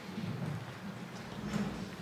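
Handling noise from a corded handheld microphone being set down on the table: low rumbling with a few faint knocks, one about one and a half seconds in.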